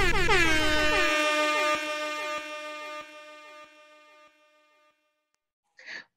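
Closing hit of the intro theme music: a loud horn-like tone that drops in pitch at first and then holds, fading away over about four seconds.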